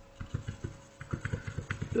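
Computer mouse scroll wheel clicking through its notches in two quick runs, about five or six clicks a second.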